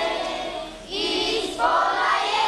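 A choir singing held notes, with a short break a little under a second in before the voices come back in.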